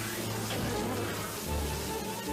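Cartoon sound effect of a swarm of bees buzzing, over background music.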